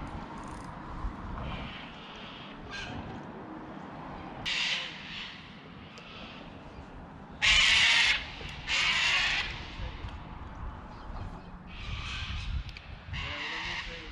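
A crow giving a series of harsh, drawn-out caws, about five calls each lasting under a second; the loudest pair comes about halfway through.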